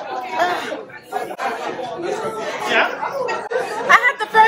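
Several people's voices talking over one another, with a loud voice near the end.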